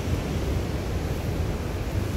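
A steady rushing noise with a heavy low rumble and no distinct events.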